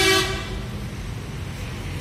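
A short, flat-pitched horn toot at the very start, over a steady low rumble that continues after it.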